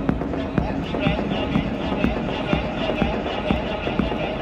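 Minimal techno from a DJ set: a steady electronic beat of sharp percussive hits over a deep bass, with a wavering high synth line coming in about a second in.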